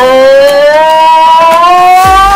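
Basenji howling: one long held call that rises slowly in pitch, with a slight waver.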